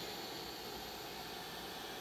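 Robot vacuum cleaner running: a steady whirring hiss of its suction motor and fan, with a faint high whine in it.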